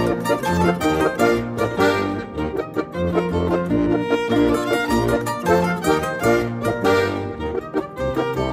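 Alpine folk music from violin, zither and Steirische Harmonika (diatonic button accordion) playing together, the violin carrying the melody over plucked zither notes and held low notes.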